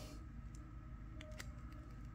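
Quiet room tone with a faint steady hum and a few faint clicks from gloved fingers handling a coin in crinkly plastic mint packaging.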